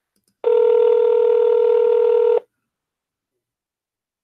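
Electronic call tone from the Paltalk voice-chat app: one steady, unchanging note with overtones, about two seconds long, that starts about half a second in and cuts off suddenly.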